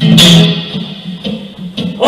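Electric guitar played live between sung lines: a chord struck just after the start rings out and fades, followed by a few lighter picked notes.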